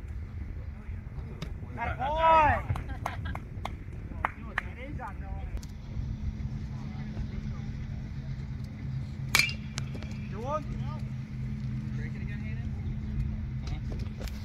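A single sharp crack of a baseball bat hitting a pitched ball, about nine seconds in. A steady low hum sets in about halfway through, under scattered spectator shouts.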